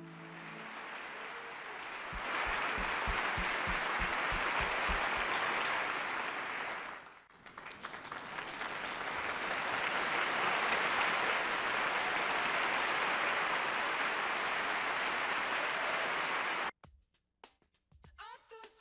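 The last note of a sung ballad fades out, followed by a studio audience applauding. The applause dips briefly about seven seconds in, picks up again, and cuts off abruptly about a second before the end.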